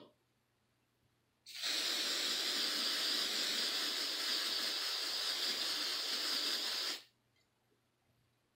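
Aqua Net aerosol hairspray can spraying in one long, steady hiss of about five seconds, starting about a second and a half in and cutting off sharply.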